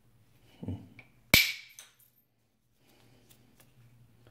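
A copper bopper strikes the edge of a flint biface once: a sharp, ringing crack that is the loudest thing here, with a softer knock shortly before it and a couple of faint clicks just after.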